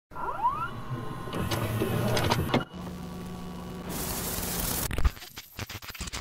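Electronic intro sound effects: rising sweeps at the start, a busy run of whirring and clicks, then a low steady hum with a burst of hiss about four seconds in. It breaks into stuttering digital glitch noise near the end.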